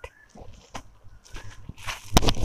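Cotton silk saree being handled and unfolded: a few brief, soft rustles and crinkles of the folded fabric, spread through the two seconds.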